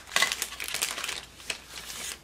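Clear plastic packaging bag crinkling as it is squeezed and pulled off a model lumber load: a rapid crackle that thins out toward the end.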